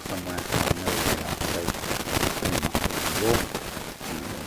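Small packets of parts being handled: irregular crinkling and rustling of packaging, with a brief murmur of voice near the end.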